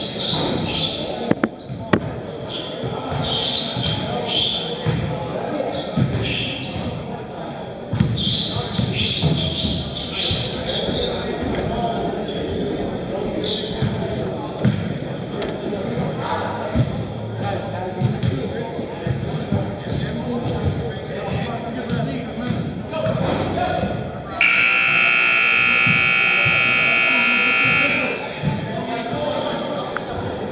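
Gymnasium scoreboard buzzer sounding one steady blast of about three and a half seconds near the end, typical of the horn that ends a timeout. Before it, a basketball bounces on the hardwood floor amid voices echoing in the gym.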